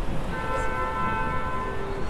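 A bell-like chime of several pitches sounding together, held for about a second and a half, over steady city street noise.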